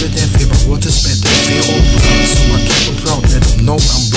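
Hip-hop track with a funk beat, loud drums and bass, and a voice running over it.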